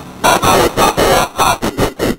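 Pingu's cartoon yell, heavily distorted by an editing effect into a loud, harsh noise. It breaks into a stuttering run of bursts that come faster toward the end.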